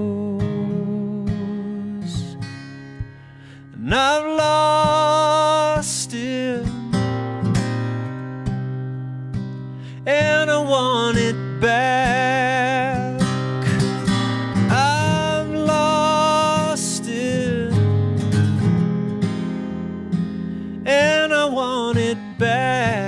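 Live acoustic guitar with a man singing: a solo singer-songwriter song, the guitar ringing on alone between sung phrases that come in about four seconds in, again at ten and fifteen seconds, and once more near the end.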